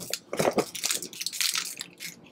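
Snack wrappers crinkling and rustling in irregular crackles as a hand rummages in a gift bag and pulls out a wrapped chocolate bar.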